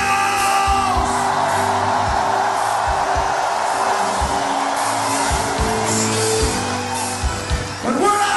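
Live rock band playing a steady groove with drums, while a large festival crowd sings and cheers along. The lead vocal ends about a second in and comes back right at the end.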